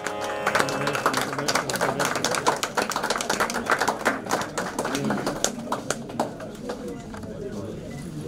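Many people talking at once, with scattered hand claps from several onlookers.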